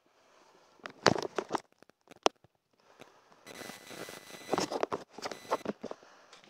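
Handling noise from a handheld phone camera being moved around: irregular clicks, knocks and rubbing, in a short cluster about a second in, a single sharp click a little after, and a longer stretch in the second half.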